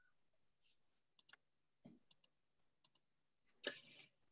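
Near silence broken by a few faint clicks, several coming in quick pairs, and a brief soft noise near the end.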